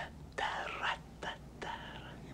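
A man whispering a few breathy words in three short bursts, the first about half a second in.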